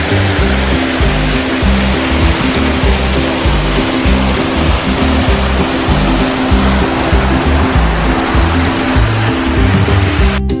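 Background music with the loud, steady rush of a waterfall heard close up from a boat. The water noise cuts off suddenly near the end, leaving only the music.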